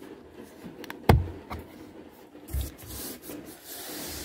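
Rubbing and handling noise against a car's plastic interior door trim panel, with one sharp knock about a second in and a dull thump a little later.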